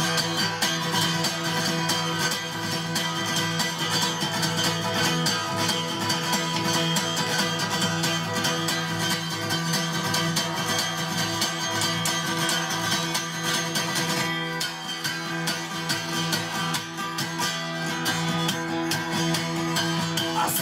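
Takamine cutaway acoustic guitar strummed rapidly and continuously in an instrumental passage, with no singing.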